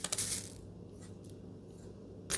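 A few light metallic clicks in the first half-second as a metal measuring spoon tips sugar into a stainless-steel mixing bowl, then a faint steady hum.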